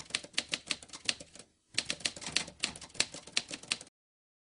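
Typewriter keystroke sound effect: a fast, even run of key clicks, about eight a second, as text is typed out on screen. There is a short pause about a second and a half in, then the clicks resume and stop just before the end.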